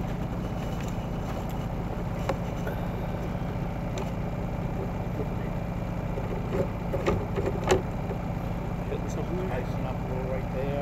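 An engine running steadily at idle, a constant low hum, with a few light knocks about two and four seconds in and a louder cluster around seven to eight seconds in.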